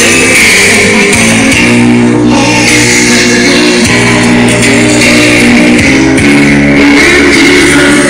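Loud music played over a PA loudspeaker, with held bass notes that change every second or two.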